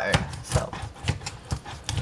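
Knife blade forced down through a catfish's backbone behind the head against a plastic cutting board: irregular sharp knocks and cracks, several in two seconds.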